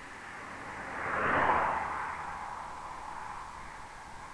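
A car driving past on the highway: tyre and engine noise swelling to its loudest about a second and a half in, then fading away.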